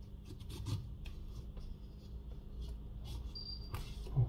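Faint handling noises: light clicks and soft rubbing as a clear suction cup is pressed and worked onto the matte glass back cover of a Samsung Galaxy S23 Ultra, with a brief thin high squeak a little past three seconds in.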